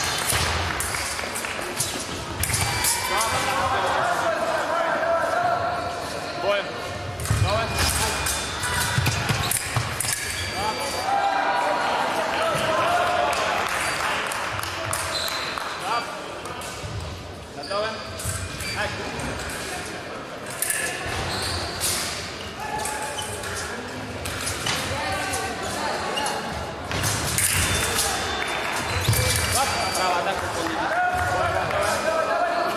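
Fencers' footwork on the piste: repeated thuds of stamping feet and lunges with sharp clicks among them, over voices echoing in a large sports hall.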